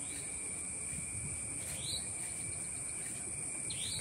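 Night insects trilling steadily at two high pitches, with two short rising chirps, one about two seconds in and one near the end.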